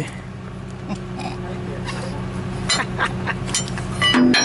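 An engine idling steadily, with a few short metallic clinks from the crane hook and rigging being handled near the end.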